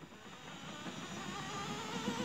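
Small electric motor of a modified toy washing machine starting up and speeding up to turn the drum of soapy water: a whine that rises slowly in pitch and grows louder, with a slight waver.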